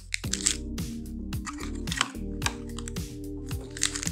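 Background music with a bass line that slides down in repeated notes, over the crinkle and rustle of foil Pokémon booster packs being handled and set down, in many short sharp bursts.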